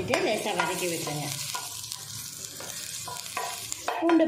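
Chopped garlic sizzling in hot oil in a stainless steel pan, a steady hiss, while a wooden spatula stirs it, knocking lightly against the metal a few times.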